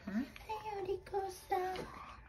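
A high voice singing in a sing-song way, with a rising note at the start and then a few held notes.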